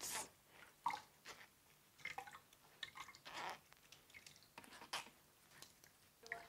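Faint, scattered drips and small splashes of blended tiger nut and ginger milk straining through a plastic sieve into a cup as the pulp is worked by hand.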